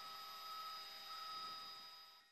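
Faint steady hiss and electrical hum with a few thin, high, steady whining tones, fading out near the end.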